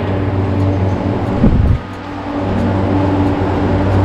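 Steady low hum of the bunker's ventilation fans and air-handling system. There is a low bump about a second and a half in, and the hum drops away for a moment before returning.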